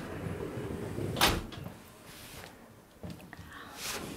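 Frosted-glass sliding door sliding shut, a low rumble along its track followed by one sharp click about a second in, with a couple of faint ticks near three seconds.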